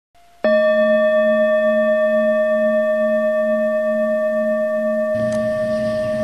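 A single bell stroke about half a second in, ringing on steadily with a clear tone over a low hum that wavers slowly. A soft low music bed comes in near the end.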